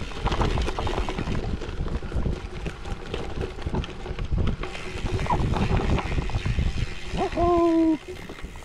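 Cervélo Áspero gravel bike on Panaracer GravelKing X1 40 mm tyres rolling over a leaf-littered dirt forest trail: steady tyre crunch and rumble over leaves, twigs and roots, with frequent small knocks and rattles as the bike hits bumps. Near the end the rider makes a brief held vocal sound.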